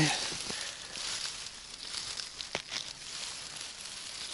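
Dry grass and plant stems rustling close to the microphone as a hand works through them, with a few sharp snaps, the loudest about two and a half seconds in.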